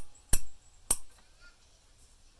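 Three sharp clicks in quick succession, the first at the very start and the last about a second in, each cut off short.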